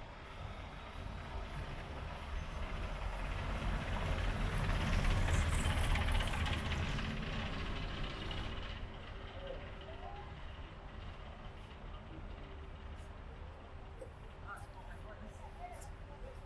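A train passing: a low rumble with rail noise that builds over about five seconds, is loudest around the middle, and then fades away over the next several seconds.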